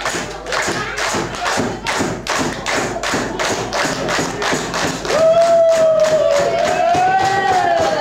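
Dikir barat performers clapping in a fast, even rhythm, about four claps a second. From about five seconds in, a solo voice holds one long sung note that rises slightly and falls near the end.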